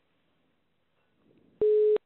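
Near silence on a recorded phone line, then about one and a half seconds in a single steady telephone ringing tone sounds, starting and stopping abruptly. It is the line ringing just before the called party picks up.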